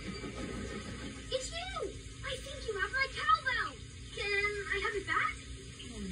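Cartoon soundtrack playing from a television: character voices without clear words, over a steady low hum and faint music.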